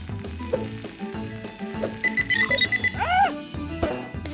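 Cartoon background music with a rapid run of about eight short high electronic beeps about halfway through, a scanner sound effect, followed by a brief rising-and-falling tone.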